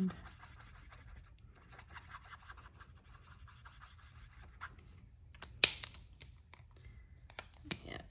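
Faint, rapid scratchy strokes of an alcohol marker tip being worked over cardstock paper, followed in the second half by a few sharp clicks.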